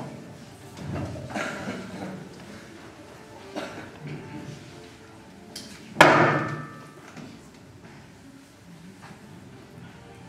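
A loud sharp bang with a brief ringing tail about six seconds in, the loudest sound, after a few quieter knocks and thumps early on. The bang echoes in a large hall.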